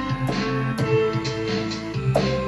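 Electronic music from Ableton Live: keyboard notes played live on a Yamaha keyboard over a looping drum beat and a recorded bassline, with steady hi-hat ticks.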